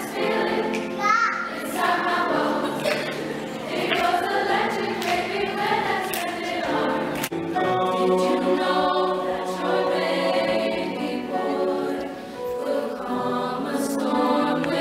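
A choir singing, with an abrupt cut about seven seconds in to another sung passage.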